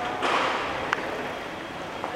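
Steady background noise of a large hall, with a brief swell of noise early and a single sharp click about a second in.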